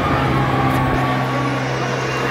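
A steady low mechanical hum, with a fainter higher whine above it, over a background wash of noise.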